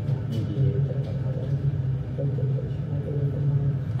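A steady low rumble with faint talking over it.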